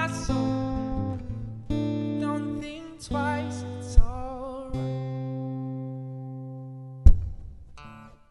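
Acoustic guitar strummed under a male voice singing the closing phrases of a folk song. A final chord rings out and fades over a couple of seconds, then a sharp thump comes about seven seconds in.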